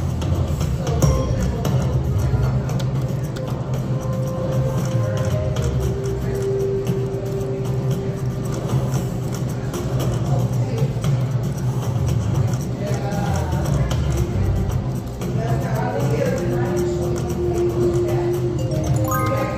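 Wolf Run Eclipse video slot machine playing its reel-spin music and tones through several spins in a row, over a steady low background hum.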